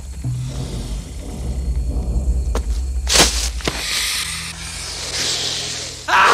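Tense film score over a steady low drone, with a brief sharp burst of noise about three seconds in and a couple of short clicks around it.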